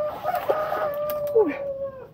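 A long call held at one steady pitch for about a second and a half, sagging slightly at the end, with a few short clicks around it.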